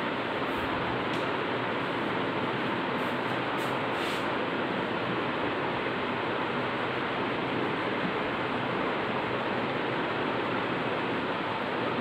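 Steady, even hiss of room noise with no pitch or rhythm, unchanged throughout.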